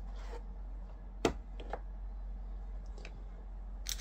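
Trading cards and their cardboard box being handled on a stone countertop: a soft brush, then one sharp tap about a second in, followed by a few light clicks, over a steady low hum.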